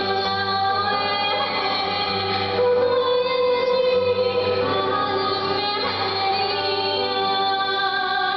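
A woman singing long held notes into a microphone, accompanied by an acoustic guitar, in a live concert performance.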